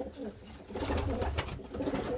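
Domestic pigeon cooing in the loft, with knocks and rustling from the nest boxes being handled.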